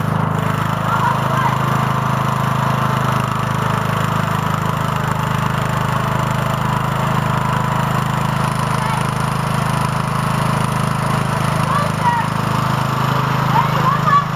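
Unmodified riding lawn tractor with hydrostatic transmission, its small engine running steadily.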